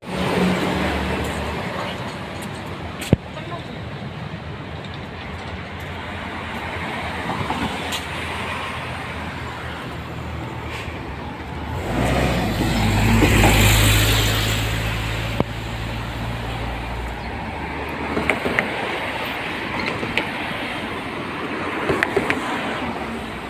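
Street traffic going by, with a steady wash of road noise. About halfway through, a motor vehicle passes close with a deep rumble that rises, peaks and fades over about five seconds.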